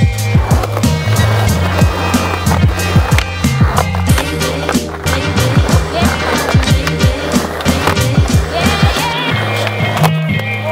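Background music with a steady bass line, over a skateboard rolling on concrete with repeated sharp clacks of the deck and wheels.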